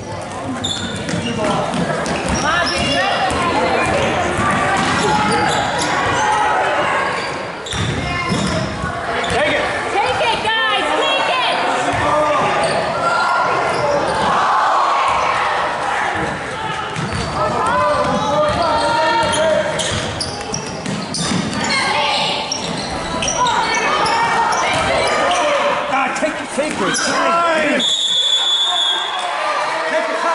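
Basketball game sounds in a large gym: the ball bouncing on the hardwood floor and sneakers moving, under continuous voices of spectators and players. Near the end comes a short referee's whistle blast lasting about a second.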